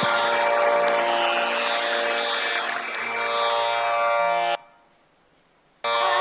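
Hindustani classical thumri performance: a steady tanpura drone with accompanying instruments holding sustained notes. It cuts off abruptly about four and a half seconds in, leaving about a second of silence before the music starts again just before the end.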